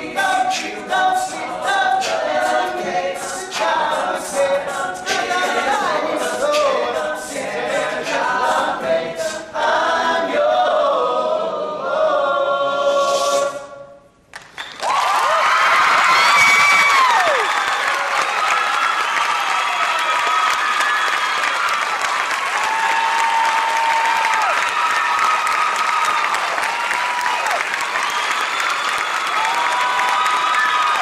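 A male a cappella group sings to a steady beat of vocal-percussion clicks, ending on a held chord that dies away about 14 seconds in. The audience then bursts into loud applause and cheering.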